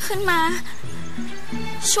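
A woman's voice, with a gliding pitch, calls out briefly at the start and begins speaking again just before the end, over background music with a slow, steady low line.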